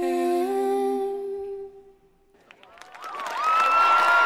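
Singing: a sustained hummed vocal line on long held notes, stepping up once, which stops about halfway through. After a brief silence, dense music comes in and builds up near the end.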